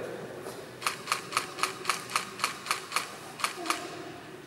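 A camera shutter firing in a continuous burst: about a dozen sharp clicks at roughly four a second, stopping shortly before the end.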